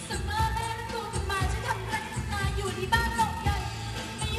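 Thai pop song: singing over a steady beat.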